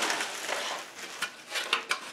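Hard plastic printer panels being handled: rubbing and a few light clicks in the second half as the white top cover is picked up and moved into place.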